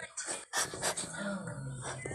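A person's voice, quiet and indistinct, in short sounds with a low hum of voice in the second half.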